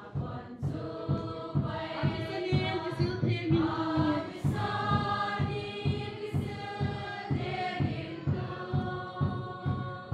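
A choir sings a hymn over a steady beat of about three beats a second.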